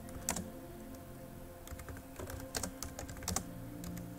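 Computer keyboard being typed on: scattered, irregular key clicks, a single one just after the start and a quicker run of clicks in the second half, over a faint steady hum.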